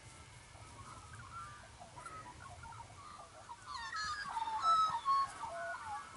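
Wild birds singing in open country: scattered chirps, then a louder, quickly changing song from about three and a half seconds in.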